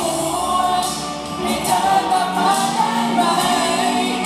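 A man singing a Thai pop song live into a handheld microphone over instrumental backing, holding long sustained notes.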